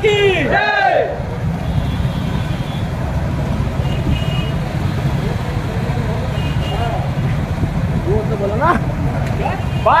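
Several motorcycle engines running at low speed in a slow-moving rally, a steady low rumble. A voice shouts briefly at the start.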